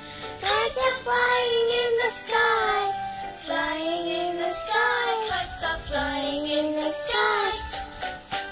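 A children's alphabet phonics song playing from a tablet app: a child-like voice sings short melodic phrases over music.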